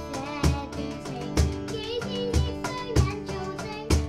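A young girl sings a song live into a microphone, accompanied by a strummed acoustic guitar with a steady beat.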